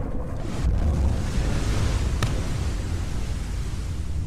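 Film sound effect of churning water heard underwater after a big wave wipeout: a steady rushing noise over a deep rumble. There is one short, sharp tick a little over two seconds in.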